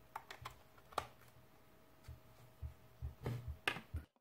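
Sharp plastic clicks and light knocks from handling a clear plastic 2.5-inch hard drive enclosure as a USB cable's plug is pushed into it, the loudest click about a second in, then a run of softer knocks near the end. A faint steady hum lies underneath.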